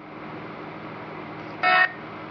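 Necrophonic spirit-box app playing a steady white-noise hiss through a tablet speaker. Near the end comes one short, voice-like fragment of about a quarter second, spliced from its DR60 sound bank.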